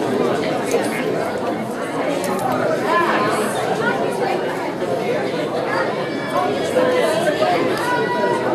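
Crowd chatter: many people talking at once in a large room, their voices overlapping into a steady murmur with no single speaker standing out.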